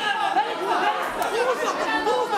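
Many voices of an indoor crowd talking and shouting over one another, a steady babble with no single speaker standing out.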